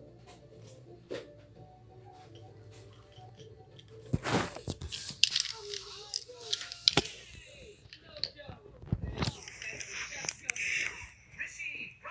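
Handling noise: rustling, crinkling and sharp clicks, starting about four seconds in, over a faint low hum.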